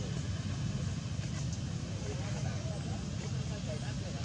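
Steady low rumble of outdoor background noise with faint, indistinct voices in the distance.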